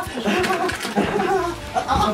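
Teenage boys yelling and laughing as they wrestle, with wordless shouts that rise and fall throughout.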